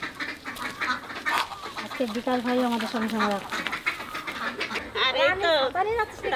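Women's voices: a drawn-out vocal sound around the middle, then bursts of laughter near the end, over light rustling and clicking.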